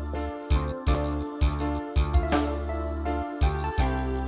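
Live band music played loud through a PA system: an instrumental passage of sustained keyboard notes over a steady bass, with sharp, irregular drum hits.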